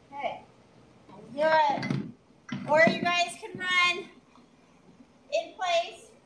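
A woman speaking in short phrases with brief pauses between them; no other sound stands out.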